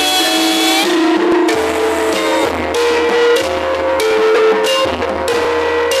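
Javanese gamelan ensemble playing a ladrang. Bronze metallophone keys and kettle gongs are struck in a steady run of ringing notes over drumming.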